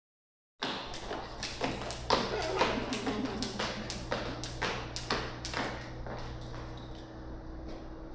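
A light-up jump rope slapping a concrete floor about twice a second as a child skips, stopping after about five and a half seconds. A steady low hum runs underneath.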